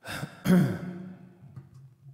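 A man sighs into a close microphone: a loud falling breathy sound about half a second in that trails off, with a held digital piano chord sounding underneath.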